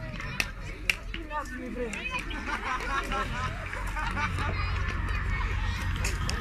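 Background chatter of spectators and children's voices, over a steady low rumble, with two sharp knocks about half a second apart near the start.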